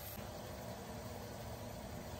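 Faint, steady hiss with a low hum underneath, from beef simmering in a lidded pan over a gas burner.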